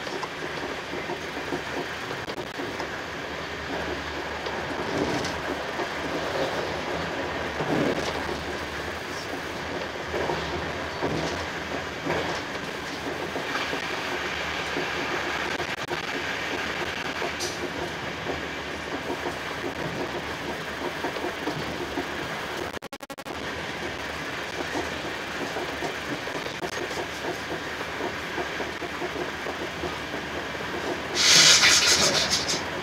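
Passenger coach of an express train running at speed: steady rumble of wheels on the rails, with occasional knocks over the track. The sound cuts out for a moment about two-thirds of the way through.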